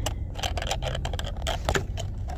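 Clear plastic product box being fumbled with and pressed to close, a run of light clicks and scrapes as the lid fails to shut, over a steady low rumble.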